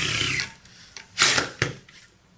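Small electric drive motors of a Pololu Zumo tracked robot chassis whining as it drives, the pitch falling away and stopping about half a second in. A little over a second in comes a short loud rasping burst, then a sharper knock.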